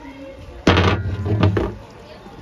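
Metal cookware knocking against a large metal cooking pot: a loud clunk about two-thirds of a second in, followed by a couple of smaller knocks.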